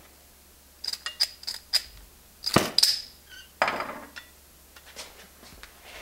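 Acetylene soldering torch being lit: a run of sharp metallic clicks, the loudest a pair about two and a half seconds in, then a short gush of hiss a second later as the gas catches.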